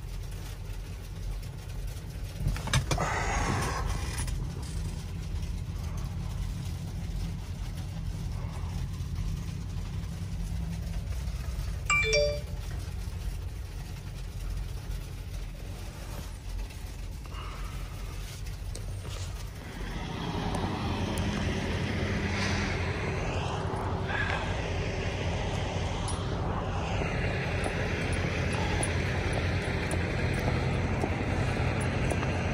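A semi-truck's engine idles with a steady low rumble inside the cab, with a brief rustle about three seconds in and a short electronic chime about twelve seconds in. From about twenty seconds the sound opens out into louder outdoor noise of wind in the falling snow.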